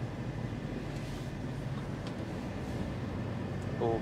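Inside the cab of an Iveco articulated lorry on the move: the diesel engine's steady low drone with tyre and road noise.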